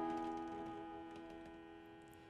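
The last chord of a country song on pedal steel and acoustic guitar ringing out and fading steadily away, with a few faint clicks.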